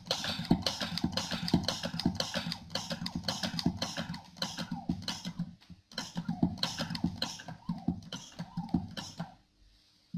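Hand pressure pump on a calibration bench being worked to raise the test pressure on a pressure transmitter: a fast, steady run of scraping clicks, several a second, with a short break about six seconds in, stopping about a second before the end.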